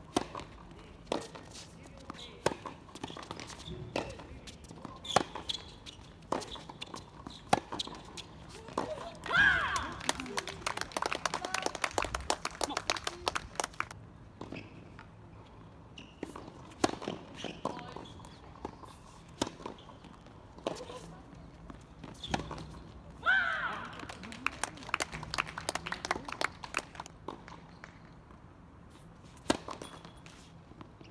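Tennis play on a hard court: sharp racket strikes on the ball, bounces and shoe steps, with a quicker run of clicks between about ten and fourteen seconds in. A player's voice rings out loud and short twice, about nine and twenty-three seconds in.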